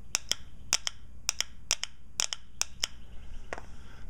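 Nissan Pathfinder automatic transmission shift solenoid clicking as a test probe is tapped on and off its lead to switch power to it: sharp clicks, often in quick pairs, roughly every half second.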